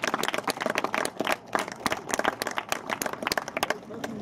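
Applause from a small crowd, with individual hand claps distinct, thinning out and stopping near the end.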